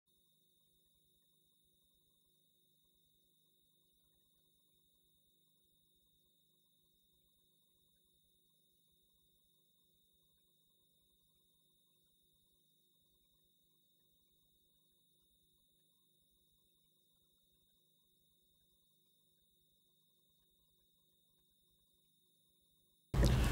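Near silence: the audio feed is essentially silent.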